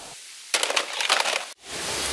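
About a second of quick, irregular crackling and clicking: plastic toy guns being handled and shifted. It cuts off abruptly about a second and a half in.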